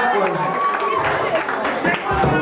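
A bar crowd talking over one another between a live band's songs, with many voices at once.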